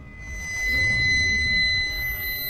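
Eerie soundtrack effect: a steady high-pitched ringing tone over a low rumble, swelling in during the first half second, like ringing in the ears.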